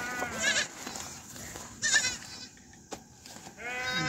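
Livestock bleating: a quavering call in the first half-second, then a shorter, higher one about two seconds in.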